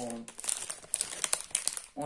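Plastic lentil packet crinkling as it is handled: an irregular run of sharp crackles.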